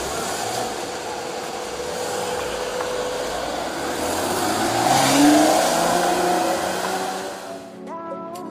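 Porsche Cayman's flat-six engine running, then revving up in a rising note around four to six seconds in as the car pulls away close by; the sound fades out near the end.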